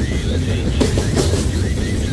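Freight train's covered hopper cars rolling past close by, a steady heavy rumble with wheels knocking over rail joints a couple of times.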